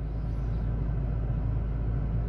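Steady low rumble with a faint hiss inside a parked car's cabin, the sound of the engine idling, with nothing else happening.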